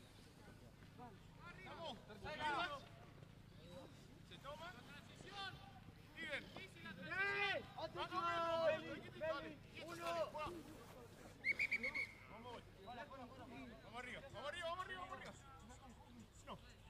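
Players' and onlookers' voices shouting and calling across a rugby pitch around a scrum. About two-thirds of the way through comes a short, high referee's whistle blast that stops play.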